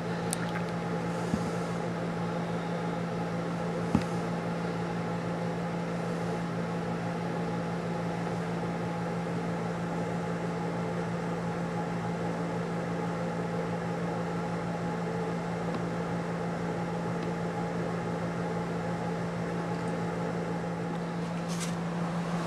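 Steady low machine hum with a few even tones above it, unchanging throughout; a single faint click about four seconds in.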